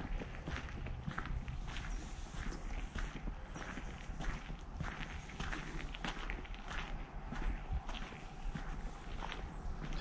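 Footsteps on a dry dirt path, about two steps a second, over a steady low rumble.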